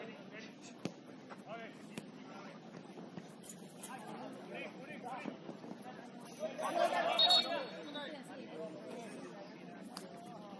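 Players' distant shouts and chatter across an outdoor football pitch, with one louder call about seven seconds in and a single sharp knock about a second in.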